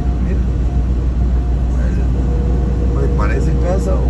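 Steady low rumble of engine and road noise inside a delivery truck's cab while driving, with a brief voice about three seconds in.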